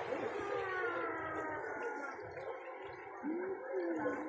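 A muffled human voice making drawn-out sounds that slide slowly down in pitch, then a short rise and fall in pitch near the end.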